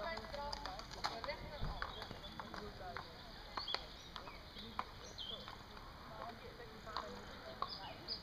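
Faint voices of people talking, with scattered light clicks and knocks.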